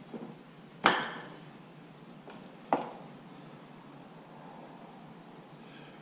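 Two sharp metal clinks about two seconds apart, the first ringing briefly: the freshly domed steel concho knocking against the steel pipe-cap die as it is taken out.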